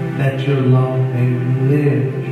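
Sustained chords on a Yamaha electronic keyboard, with a man's wordless, chant-like voice coming in over them about a quarter second in.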